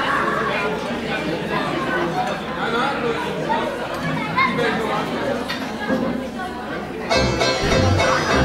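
Hall full of people chattering, many voices talking at once; about seven seconds in, music starts abruptly with a low beat and rises above the chatter.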